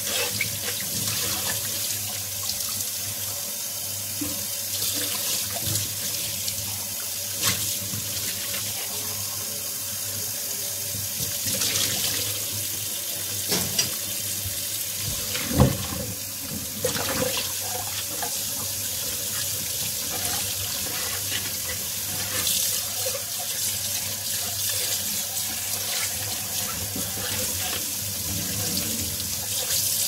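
Tap water running into a stainless steel sink and splashing over a cut-crystal bowl and a porcelain cup being rinsed by hand. A few short knocks of the dishes come through the water sound, the sharpest about halfway through.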